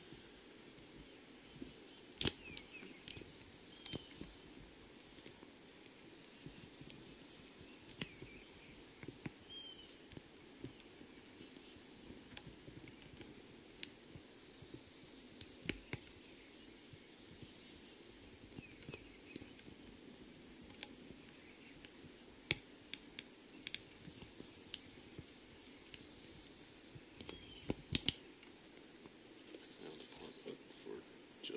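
Quiet outdoor ambience carrying a steady, unbroken high-pitched insect drone. A few short faint clicks are scattered through it.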